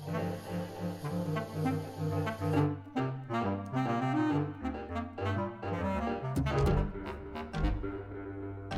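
Bass clarinet playing a busy line of short, detached notes, opening over a repeating low figure. A high hiss behind the playing cuts off about a third of the way in.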